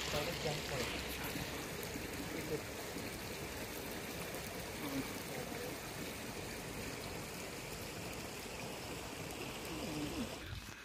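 Shallow stream water trickling: a steady, even rush, with faint voices in the background.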